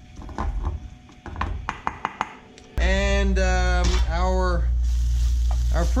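Wooden spatula scraping and knocking against a small metal saucepan as onion confit is stirred, a quick run of clicks. About three seconds in, this cuts suddenly to a steady low hum with a voice over it.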